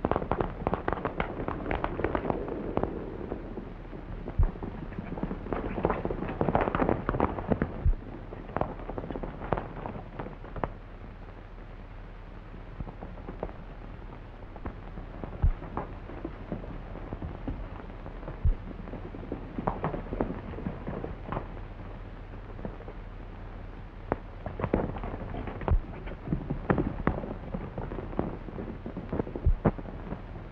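Horses' hooves galloping in an irregular clatter, with splashing water in the first few seconds as the horses cross a stream. Scattered sharp clicks and a faint low hum from the old film soundtrack run underneath.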